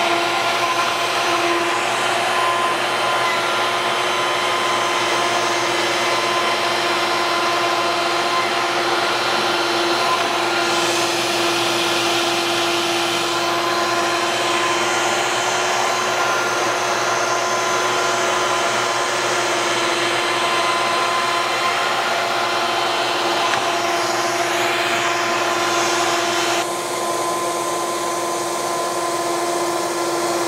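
Festool plunge router running at steady high speed with a constant whine while its one-inch spiral bit surfaces a board in a flattening pass, with dust-extractor suction through the hose. The sound changes slightly near the end.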